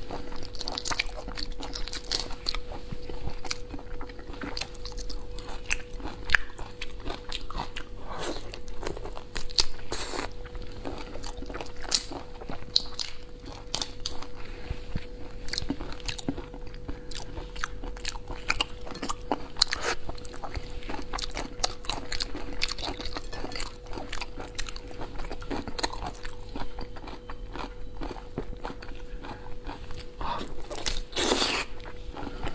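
Close-miked eating of a large tiger prawn: the shell cracking as it is peeled apart by hand, with biting and chewing in a steady stream of small crackles and clicks. A faint steady hum runs underneath.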